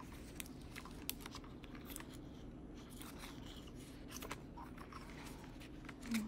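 Faint handling of a pocket ring planner: scattered light clicks and rustles as a clear plastic divider, a sticker and paper pages are moved and turned.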